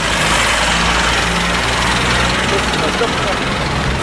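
A motor vehicle engine running close by: a steady low hum under an even hiss of street noise, with faint voices near the end.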